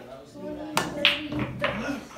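Pool cue striking the cue ball, then billiard balls clicking against each other and the table: three sharp clicks within about a second, starting near the middle, over background voices.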